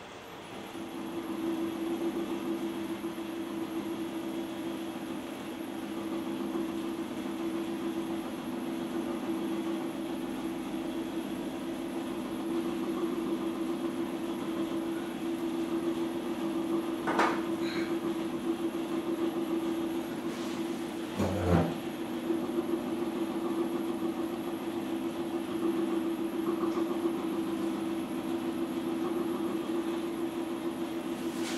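Electric potter's wheel motor starting up and then running with a steady hum and a faint high whine. Two sharp knocks of tools being handled partway through.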